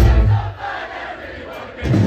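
A live rock band playing at full volume stops dead about half a second in. A packed concert crowd yells and cheers through the break. The band crashes back in with heavy bass and drums just before the end.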